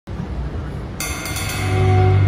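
A drum kit cymbal struck once about a second in, ringing on, as a loud sustained low bass note swells in beneath it; before the hit there is only a low rumble.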